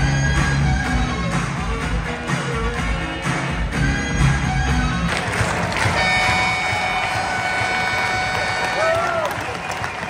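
Arena PA music playing over a hockey crowd: a steady beat for about the first five seconds, then a held chord.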